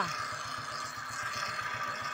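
Motorcycle engine idling: a low, even pulsing under a steady background.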